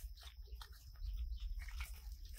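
Young macaques chewing and munching soft jackfruit close by, with irregular wet clicks and smacks, busiest in the second half. A low rumble runs underneath.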